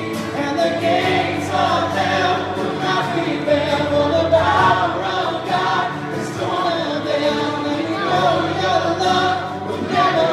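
Voices singing a worship song together over digital piano accompaniment.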